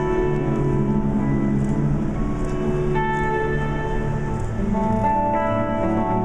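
A live band plays an instrumental passage between sung lines, with an electric guitar among the instruments. Sustained chords change about halfway through and again near the end.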